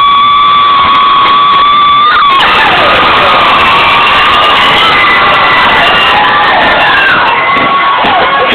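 A crowd cheering and screaming. It opens with one long, high held cry that drops away about two seconds in, then many voices yell together.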